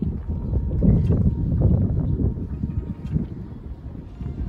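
Wind buffeting the microphone: a loud, low, uneven rumble that swells and drops, strongest about a second in.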